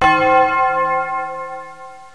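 A single ringing musical note or chord, struck once and dying away slowly, then cut off abruptly after about two seconds.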